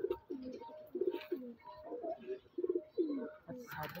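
Several Teddy pigeons cooing in a loft, a steady run of low coos that rise and fall and overlap one after another.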